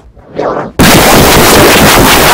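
A short laugh, then from just under a second in an extremely loud, heavily distorted blast of noise, clipping at full volume and covering every pitch evenly, typical of an ear-rape edit effect.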